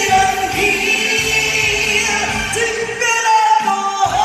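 A female singer sings a song live into a handheld microphone, amplified over backing music. The low accompaniment drops out briefly a little past three seconds in.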